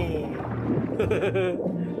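Cartoon soundtrack: background music with a character's wordless vocalizing, its pitch bending up and down, in the first second and a half.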